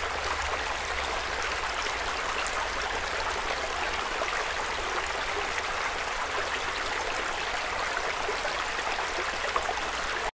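Playback of an outdoor ambience field recording: a steady, even rush of noise, with a low-end rumble underneath it that is unwanted background noise in the recording.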